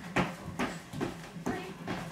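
Sneakers thumping on a hardwood floor in a steady rhythm, about two landings a second, from a person jumping through an aerobic workout.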